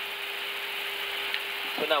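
Steady cockpit noise of an Airbus A321 in flight: an even hiss with a constant steady hum under it, unchanging in level, and one faint tick about a second in.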